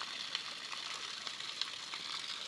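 Spring water pouring from the end of a half-cut PVC pipe and splashing onto the ground below: a steady hiss with faint small splashes.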